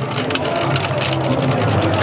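FTC competition robot's electric drive motors and gearboxes whirring as it drives, with frequent sharp clicks and knocks of mechanism and game pieces.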